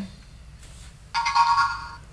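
A short electronic chime starts suddenly about a second in and fades away. It signals the program being downloaded to the LEGO Mindstorms EV3.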